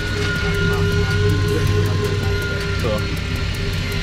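Boat motor running steadily, a low hum with a constant whine held over it.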